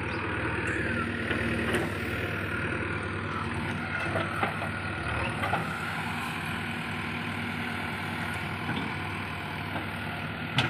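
JCB 3DX backhoe loader's diesel engine running steadily as the backhoe digs. A steady tone comes and goes over it, and a few sharp knocks are heard at about two, four and a half and five and a half seconds in.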